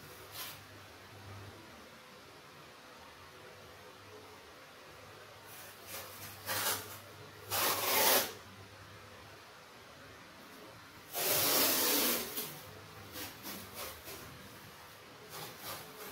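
Masking tape being pulled off the roll in short hissing, rasping strips and pressed down onto a painted wall. There are a few short pulls, a louder one near the middle, and a longer, loudest pull about two-thirds through, followed by light rubbing and scratches.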